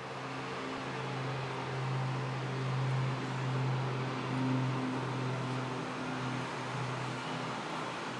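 Dornier 328 turboprop engines and propellers running as the aircraft moves along the runway: a steady low propeller drone with a few fainter overtones. It swells a little midway and fades out near the end.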